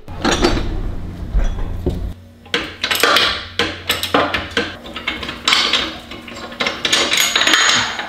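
Irregular metal clanks, knocks and rattles as the parts of a crash-damaged wheel and suspension assembly are handled and shifted. A low hum is present for about the first two seconds.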